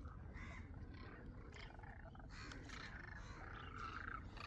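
A distant flock of demoiselle cranes calling faintly: a steady run of short, overlapping calls, several a second.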